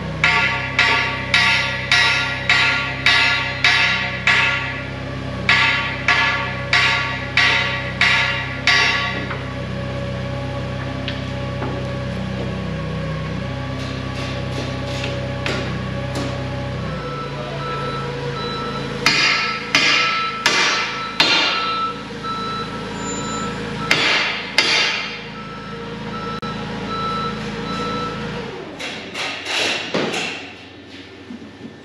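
Steel bar struck hard and repeatedly against a forklift lift cylinder, about two sharp metallic blows a second for the first nine seconds, to knock the cylinder loose from the mast. A second run of blows comes about twenty seconds in. A steady machine hum underneath cuts off abruptly about halfway through.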